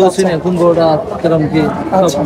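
A man talking continuously, with no break in his speech.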